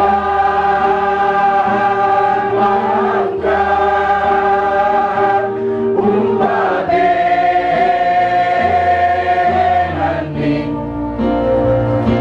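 Group of women singing a slow Toraja funeral song together in long held notes, with a low sustained bass note beneath that shifts every couple of seconds.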